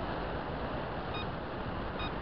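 Steady road and driving noise of a car moving along a city road, with two short high beeps, one just past a second in and one at the end.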